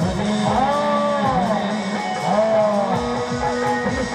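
Loud live dance music: an electronic keyboard plays a lead melody that swoops up and down in pitch over a fast, steady drum rhythm.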